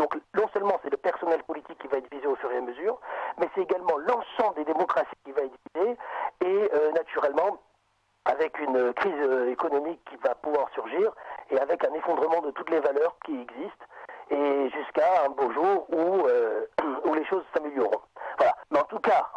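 Only speech: a man talking on radio, with one short pause about eight seconds in.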